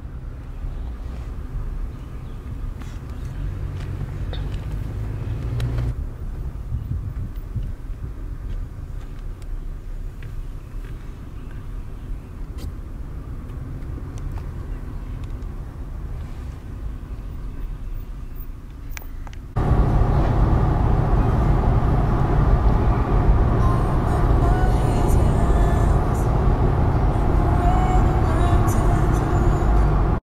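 Road and engine noise inside a moving Toyota 4Runner's cabin, a steady low rumble. About two-thirds of the way in it cuts sharply to a louder, fuller rumble with more hiss above it.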